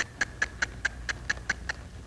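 A horse's hoofbeats as a mare walks forward on arena dirt: a steady run of sharp clicks, about four or five a second.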